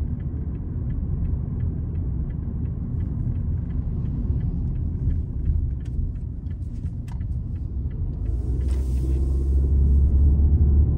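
Low, steady rumble of a car's engine and tyres inside the cabin. A turn-signal relay ticks about three times a second as the car turns at an intersection, stopping about seven seconds in, and a brief hiss comes near the end.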